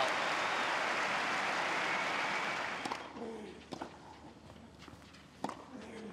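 Stadium crowd applauding a winning tennis shot, fading out about three seconds in. Then a tennis ball is struck by rackets in a rally, a couple of sharp pops, the loudest near the end.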